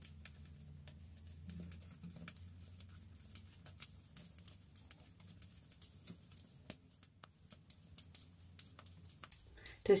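Metal circular knitting needles clicking faintly and irregularly as a row of knit stitches is worked.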